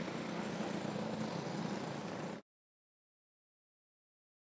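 Steady background noise with a faint engine hum from the kart track, cut off abruptly to dead silence about two and a half seconds in.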